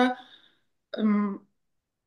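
A woman's voice: a word trails off, then after a short pause comes one brief held hesitation sound, a steady 'eee', about a second in.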